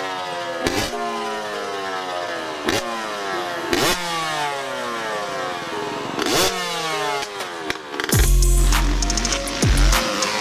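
Dirt bike engine revved in a series of sharp throttle blips, several seconds apart, each rev falling away slowly in pitch. Music with a deep bass comes in near the end.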